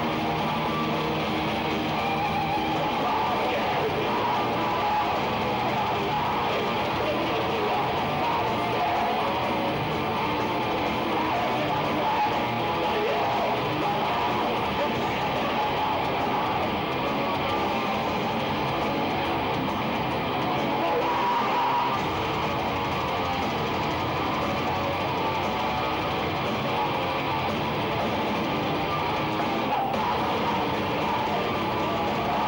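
Melodic death metal band playing live: distorted electric guitars, bass and drums in a dense, unbroken wall of sound, with harsh vocals over it.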